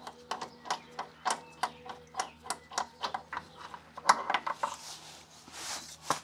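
Ratchet clicking in quick, uneven strokes, about three clicks a second, as a socket on an extension backs off an anti-roll bar mounting nut that is barely tight.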